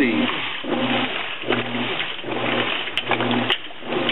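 Whirlpool WTW4950XW1 high-efficiency top-load washing machine running its wash cycle, turning a load of shower curtains. The drive motor hums in repeated pulses, several over a few seconds, over a steady noisy wash sound.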